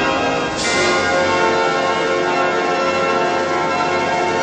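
Recorded music in which bells ring together: many overlapping sustained tones, with a fresh strike about half a second in.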